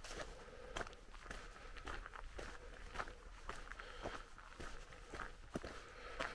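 Footsteps on a gravel path at a steady walking pace.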